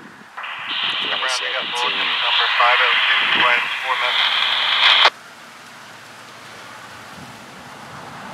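Voice transmission over a railroad scanner radio, thin and narrow-sounding with static hiss. It starts just after the opening and cuts off abruptly about five seconds in, leaving a quieter steady background.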